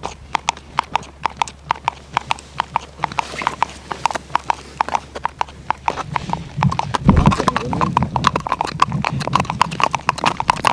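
Icelandic horses' hooves striking bare ice in the tölt, a steady run of sharp clicks, about four to five a second, each with a ringing note. A low rumble joins about six seconds in, loudest near seven seconds.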